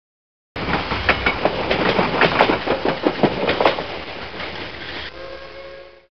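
Train running on track, its wheels clicking irregularly over rail joints. About five seconds in the clatter fades and gives way to a fading steady tone.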